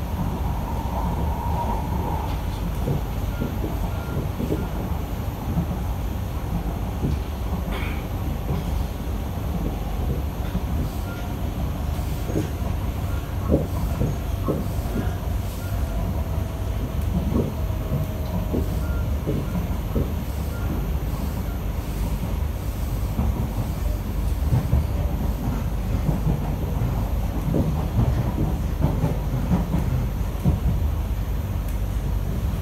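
Inside a Kawasaki & CSR Sifang C151A metro carriage under way: a steady low rumble of wheels on track, with scattered short knocks from the running gear and a faint, slightly falling tone partway through.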